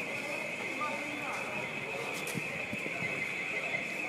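Night street during rioting: a steady high-pitched ringing runs unbroken under distant shouting voices and a few faint knocks.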